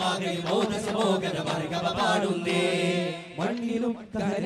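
Voices singing an Arabic devotional chant in long held, slowly bending lines, with duff frame drums struck along with it.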